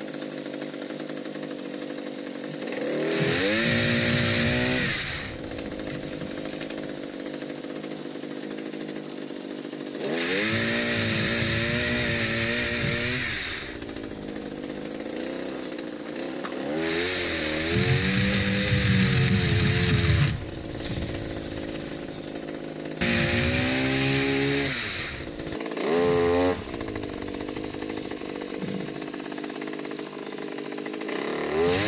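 Pole chainsaw's small engine revving up in four long bursts and one short one as it cuts overhead bamboo, the pitch rising at each rev and settling back to a lower idle between cuts.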